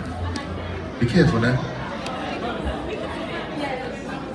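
Several people chatting in a large echoing hall, with one voice briefly louder about a second in.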